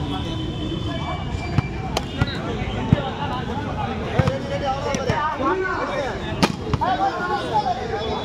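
Voices of players and spectators talking and calling out around a volleyball court, with several sharp smacks scattered through.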